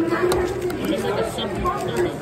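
Background chatter of several voices in a busy room, with a dull thump near the end.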